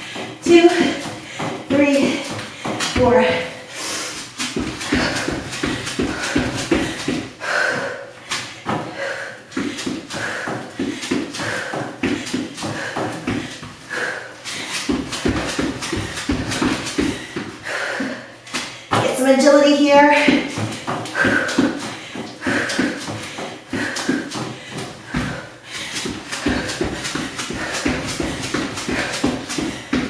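Rapid, rhythmic footfalls of sneakers landing on an exercise mat during running in place with high knees and hops, with a person's voice heard now and then.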